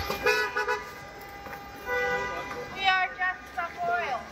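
Vehicle horns honking in traffic: a quick run of short toots just after the start, then longer held honks around the middle and later.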